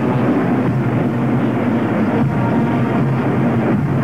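Marching band playing, brass horns holding low notes over drums.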